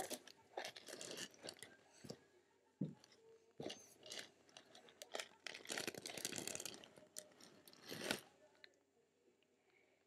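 Plastic pocket pages of a trading-card binder being handled and turned: intermittent rustling and crackling of plastic with a few sharp clicks.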